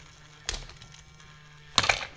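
Loopin' Chewie toy game: two sharp plastic clacks, one about half a second in and one near the end, as the flipper levers and the swooping arm strike, over the steady low hum of the game's small motor.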